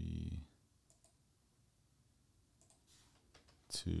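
A few faint computer keyboard and mouse clicks, spaced apart, with a sharper click just before the end.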